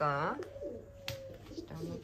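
A crow calling: one loud call with a falling pitch right at the start, then only faint sounds.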